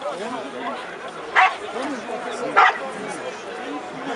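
A dog barks twice, about a second apart, the two barks standing out loudly over the chatter of many voices in a crowd.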